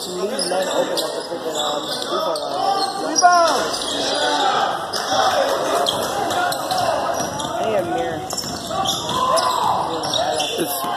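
A basketball being dribbled on a hardwood gym floor, with players' and spectators' voices calling out throughout.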